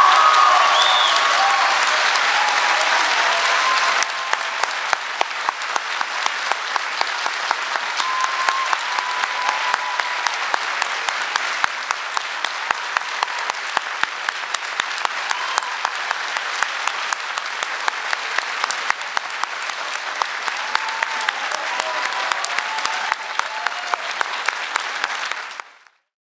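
A large audience applauding, loudest at first; after about four seconds the clapping settles into a steady rhythmic beat, with voices calling out over it.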